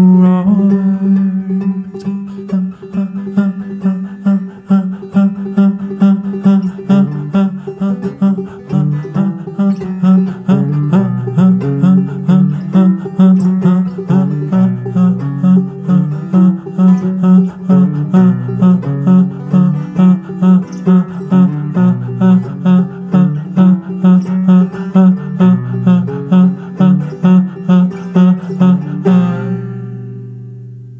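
Open-back banjo played in a steady, even picking rhythm over a held low note and a stepping bass line. It stops about a second before the end and rings away.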